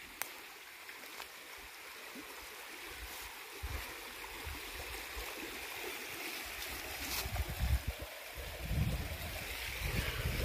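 A shallow rocky creek rushing and babbling in a steady hiss that grows louder toward the end.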